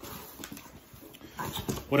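Cardboard record mailer being pulled open by hand: faint rustling and scraping with a few light clicks.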